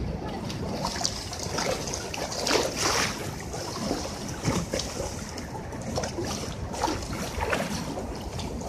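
Fast-flowing floodwater of the Yamuna river rushing and splashing against a concrete embankment, a steady rush with irregular short splashes. Wind rumbles on the microphone.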